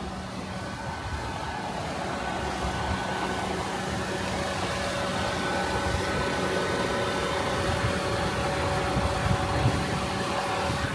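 Toyota Corolla Altis 1.6-litre Dual VVT-i four-cylinder engine idling steadily, getting gradually louder.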